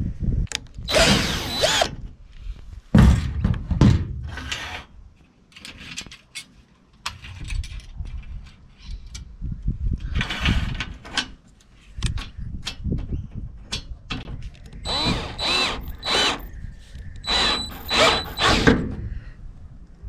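Cordless drill running in several short bursts of about a second each, with a high motor whine, loosening and tightening the aluminium clamp bolts on solar panel mounting rails to fit earth washers under the panel frames. Quieter clanks and scrapes of metal parts being handled come between the bursts.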